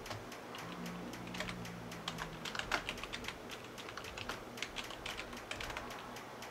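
Computer keyboard typing: a run of quick, irregular keystroke clicks as a line of code is entered.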